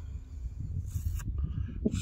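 Wind buffeting an outdoor microphone as a steady low rumble, with a short hiss about a second in.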